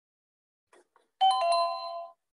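A two-note electronic chime, like a computer or phone notification sound, starting about a second in, with two quick notes that ring briefly and fade.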